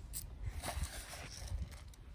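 Sunflower seeds scattered by hand onto bare soil: faint rustling with a few light clicks, the sharpest just after the start, over a low rumble of camera handling.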